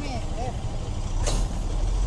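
Stopped motorcycles' engines idling in a low, steady rumble that swells a little past the middle, with a brief hiss about a second and a half in.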